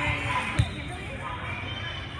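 A volleyball bounced once on a hardwood gym floor, a single sharp thump about half a second in, over background chatter of voices.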